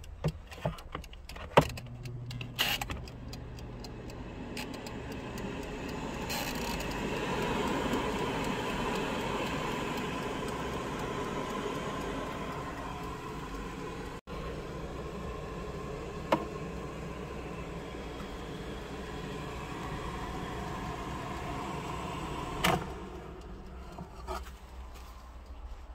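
Air fryer with a dial timer: a few clicks and knocks of handling, then its fan running with a steady whir from about four seconds in. A sharp click past the middle and another near the end.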